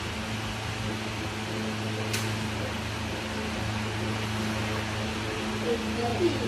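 Electric standing fan running steadily with a low hum, and a single faint click about two seconds in.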